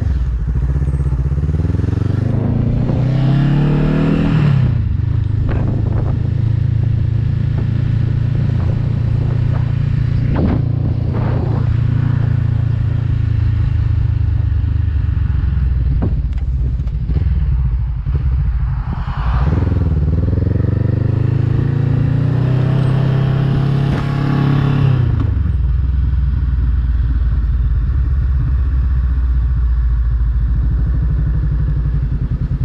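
Sport motorcycle engine pulling away, its revs climbing for a few seconds before settling into a steady run. About eighteen seconds in it eases off, then climbs again before dropping to a lower steady note for the last few seconds.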